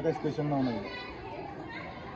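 A man's voice trailing off at the end of a phrase in the first second, then faint background voices and chatter.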